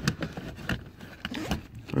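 Handling noise: scrapes and small knocks as hands fumble under a car seat to reach a wiring plug.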